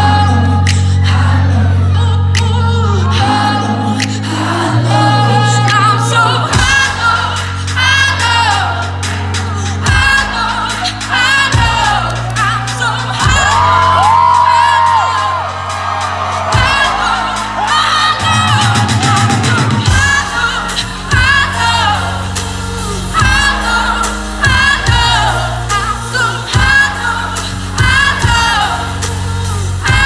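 Live pop band playing loudly: a female lead vocal sings over keyboard, bass and drums, holding one long note about halfway through.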